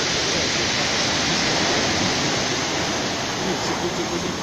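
Surf from a stormy sea breaking and washing up a pebble beach: a steady, loud rush.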